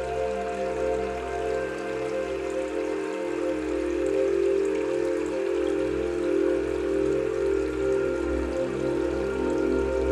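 Slow ambient meditation music of long, held pad chords, with a steady rain sound running underneath.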